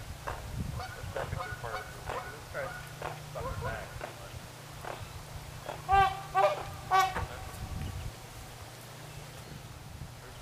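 Waterfowl calling: a run of short calls, then three loud calls in quick succession about six to seven seconds in.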